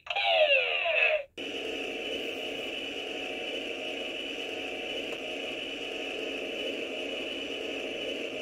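Electronic sound effects from a Buzz Lightyear talking action figure's built-in speaker: about a second of overlapping falling zap sweeps, then a steady rushing hiss that holds at an even level.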